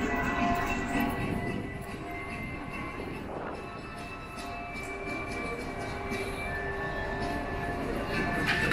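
Busy pedestrian street ambience: a steady murmur of passers-by and footsteps, with faint music playing in the background.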